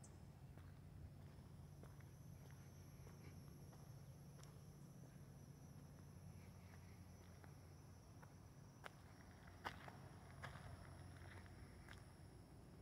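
Near silence: faint footsteps of someone walking, with a few soft clicks, the clearest about nine to ten seconds in. A faint steady high-pitched whine runs underneath.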